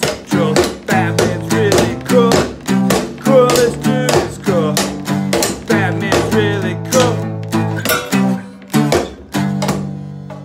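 Acoustic guitar strummed in a steady rhythm while a man sings along. The singing drops out near the end, leaving the strummed chords.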